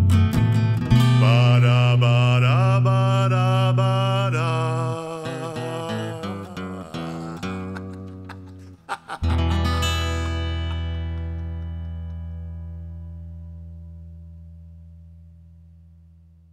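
The ending of a guitar-led song. The band plays a few last phrases that thin out and grow quieter. About nine seconds in, one final low chord is struck and left to ring, fading slowly away.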